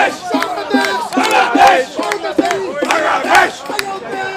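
A group of cricket supporters chanting together in short, rhythmic shouts, about two or three a second, with drum beats among them.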